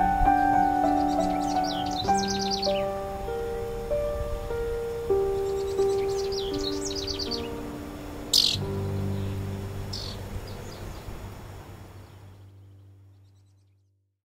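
Slow, gentle piano music with long held notes, fading out to silence near the end. Birds chirp over it: two quick trills of chirps, about a second in and about six seconds in, and one sharp chirp a little after eight seconds.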